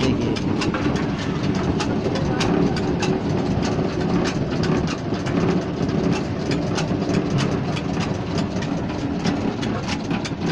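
Rice-flaking (chura) machine running: a heavy iron pan turns under a pressing head to flatten paddy. It makes a steady rumble with a quick, irregular clatter of knocks, several a second.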